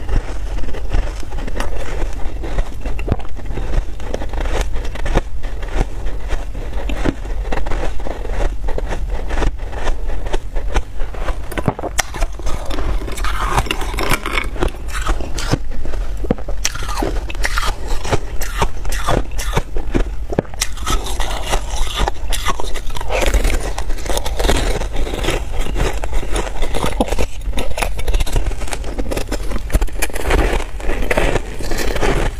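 Close-miked ice eating: dense crunching and crackling as ice is bitten and chewed, with a metal spoon scraping against a glass bowl.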